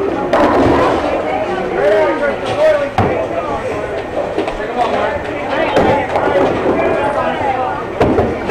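Background voices chattering in a bowling alley, with bowling balls and pins knocking and clattering; a sharp knock stands out about three seconds in.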